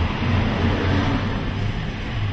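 Police patrol car's engine and road noise heard from inside the cabin as it drives, a steady low drone.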